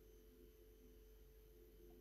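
Near silence: room tone with a faint steady tone.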